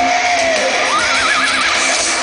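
Thrash metal band playing live at full volume: a held high lead note bends down, then slides up into a wide, wavering vibrato over the distorted guitars and drums.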